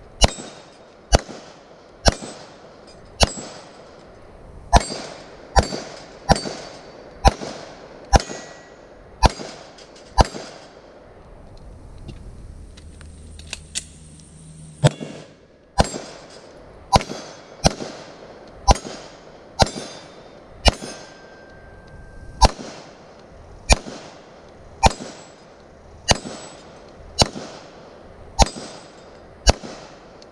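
Handgun shots fired one after another, roughly one a second, with a pause of a few seconds near the middle before the shooting resumes.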